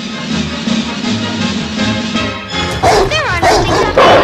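Music that gives way about two and a half seconds in to film sound of a St. Bernard. It gives a rising-and-falling whine, then loud barks near the end.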